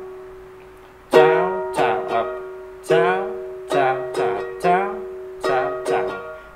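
Ukulele strummed in chords, a down, down, down-up strum pattern repeated. The chord from before dies away at first, and the strumming starts again about a second in.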